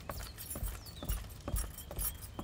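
Horse hooves clopping at a walk: irregular knocks, about two or three a second.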